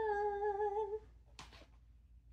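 A woman's voice drawing out a word into a sung, hummed note, held for about a second with a slight waver, then stopping.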